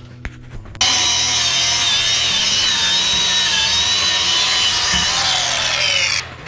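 A power tool running steadily under load: a loud, even hiss with a high whine through it. It starts abruptly about a second in and lasts about five seconds.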